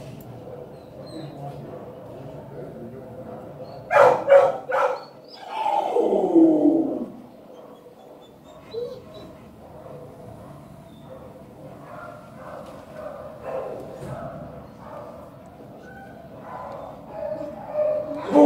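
A dog barks three times in quick succession about four seconds in, then gives a long whine that falls in pitch. Softer whimpers and small noises follow.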